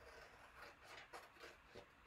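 Scissors cutting through a sheet of silk-screen stencil transfers, a series of faint snips.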